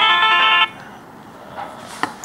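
A mobile phone ringtone playing an electronic melody of clean, steady notes, cut off abruptly about half a second in; quiet room noise follows.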